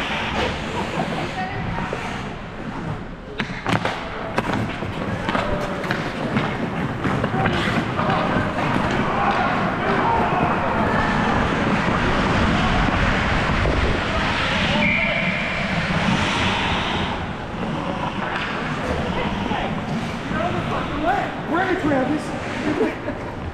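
Ice hockey in play heard from a helmet camera: sticks clacking on the puck and ice with several sharp clacks in the first few seconds, then a steady rush of skate blades on the ice that is loudest through the middle, with indistinct players' voices.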